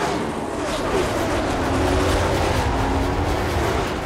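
NASCAR stock cars racing past at full throttle, played very loud through a home surround sound system: engine notes sliding down in pitch as the cars go by, over a heavy deep rumble that builds during the first second.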